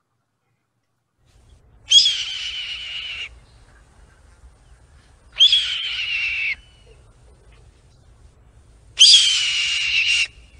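A recording of a red-tailed hawk's call: three long, descending screams, each about a second long and about three seconds apart.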